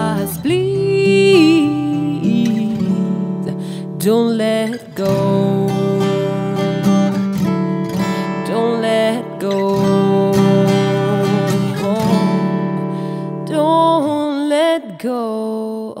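A woman singing long, held notes that slide in pitch, over an acoustic guitar.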